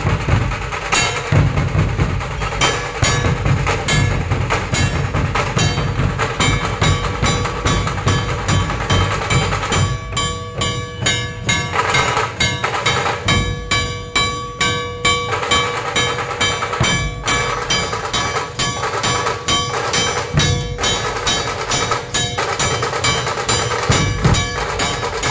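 Dhol drums of a street drum troupe beating a fast, dense rhythm without a break. A steady ringing tone sounds under the drumming, clearest through the middle.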